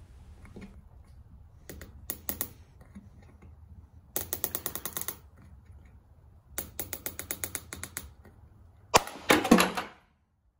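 Handheld glue-tab dent puller being cranked down: three bursts of rapid clicking as its knob is turned, then a louder snap with a short creak near the end as the pull lets go.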